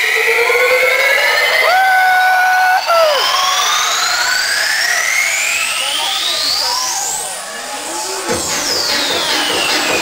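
DJ set intro played loud over a club sound system. Several long electronic sweeps rise in pitch over a few seconds each, a held tone sounds for about a second near the start, and sweeps fall in pitch near the end.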